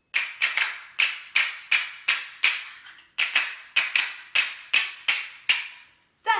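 Small metal hand cymbals struck together over and over, about three clashes a second. Each clash rings briefly with a high metallic tone, with a short break about three seconds in.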